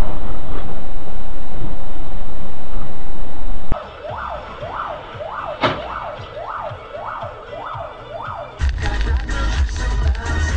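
A loud, steady rumbling noise cuts off suddenly a little under four seconds in. Then a siren sweeps up and down about twice a second, with one sharp knock midway. Music with a heavy beat comes in near the end.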